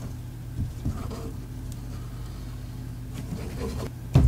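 Faint handling sounds of a squeeze bottle of white craft glue being run over the back of a cardstock panel, with a few soft taps in the first second or so, over a steady low hum.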